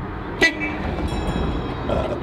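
Cabin noise inside a moving vintage Volkswagen bus: a steady low road rumble, with a single sharp knock about half a second in.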